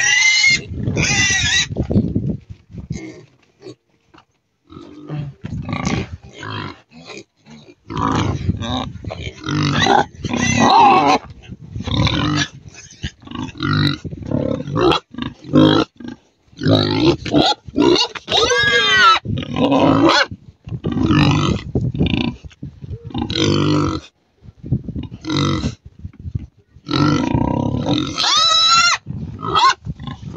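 Domestic pigs grunting and squealing in many short, closely spaced calls, with a few longer high-pitched squeals near the middle and near the end.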